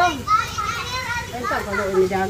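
Children's voices talking and calling out in high pitch, several overlapping.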